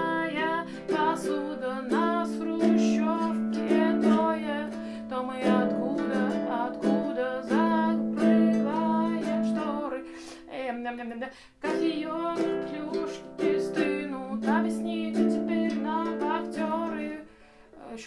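Flight GUT 350 six-string nylon-strung guitalele played with the fingers, strumming and picking chords in a steady rhythm, with a brief break about eleven and a half seconds in.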